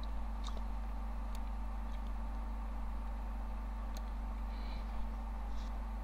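Steady low electrical hum and faint hiss of the recording microphone's background noise, with a constant tone near 200 Hz. A few faint mouse clicks come near the start and again about four seconds in.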